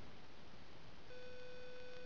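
Steady low background hiss; about halfway through, a flat, steady beep-like tone starts and holds for about a second.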